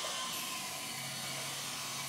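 Quiet room tone: a steady faint hiss, with a low hum coming in about a second in.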